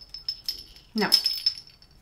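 Small jingle bell on a plush bag charm tinkling as it is handled, a high thin ringing that brightens about half a second in and again about a second in.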